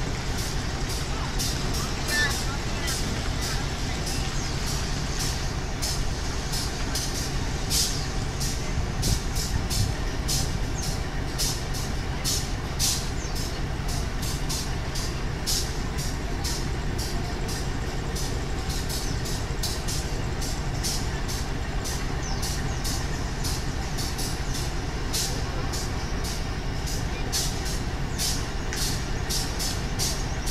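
Diesel engine of a KAI CC 206 (GE C20EMP) locomotive idling with a steady low rumble while the train stands held at a signal. A rapid, irregular high ticking runs over it.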